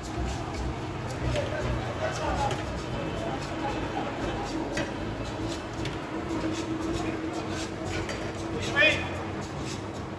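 Indistinct background voices and light clinks around a charcoal grill, over a steady hum. A short, squeaky chirp comes near the end.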